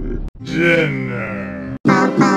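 A cartoon character's voice, edited and pitch-shifted, making one drawn-out grunt-like vocal sound about a second and a half long. It starts and stops abruptly, as spliced audio does.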